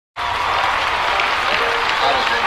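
Audience applauding, starting abruptly just after the start.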